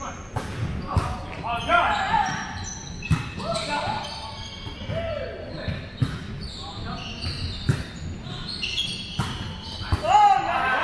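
Indoor volleyball rally in a large, echoing gym: the ball struck several times, sneakers squeaking on the hardwood floor, and players' short calls.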